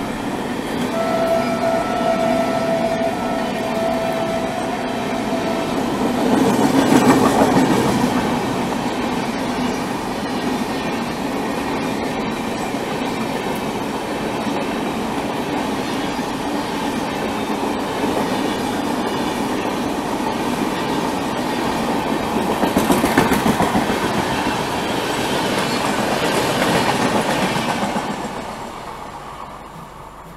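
Rajdhani Express coaches passing at close range on the next track, a loud steady rush of wheel and air noise with swells as the coaches go by. A steady horn sounds for about five seconds near the start, and the noise falls away near the end as the last coach clears.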